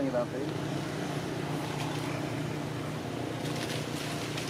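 Indistinct people's voices over a steady low hum, with a short voice-like sound at the very start.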